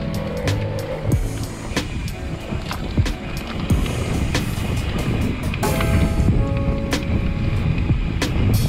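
Mountain bike rattling and knocking over a rough dirt singletrack, with a steady low rumble of tyres and wind on the microphone. Background music with short melodic notes plays over it, most plainly about six seconds in.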